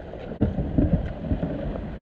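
Water splashing and rushing around a whitewater kayak's hull as it is paddled along a rocky bank, over a low rumble. The sound cuts off abruptly at the end.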